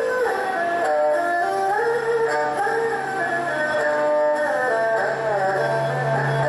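Erhu playing a flowing melody with frequent slides between notes and held tones. A low steady tone grows louder near the end.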